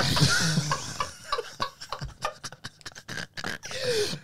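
Men laughing hard, in breathy, broken bursts. The laughter is loudest at the start and thins to scattered short gasps and snorts.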